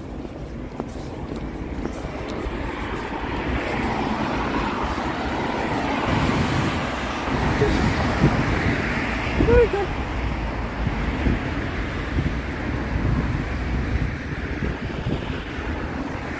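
Road traffic going past: tyre and engine noise on a wet road, swelling over the first several seconds and easing toward the end.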